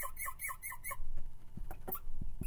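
Marker squeaking on a glass writing board: a rapid run of short squeaks, about six or seven in the first second, as small strokes are drawn, then a few faint taps.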